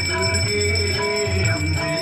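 Hindu evening aarti music, a devotional piece with a bell ringing steadily through it.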